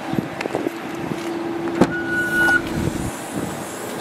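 Car tailgate being opened. A steady whine runs for about three seconds, with a sharp click a little before the two-second mark and a short high beep just after it.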